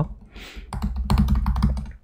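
Fast typing on a computer keyboard: a quick run of keystrokes from a little under a second in until near the end.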